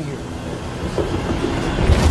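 Trailer sound design: a steady, rumbling rush of noise with a rattling, train-like quality, and a deep bass swell that comes in near the end.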